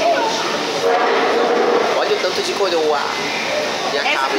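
Speech: a man's voice talking, over steady background hum.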